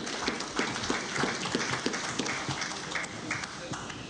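Audience applauding: many hand claps together, thinning out near the end.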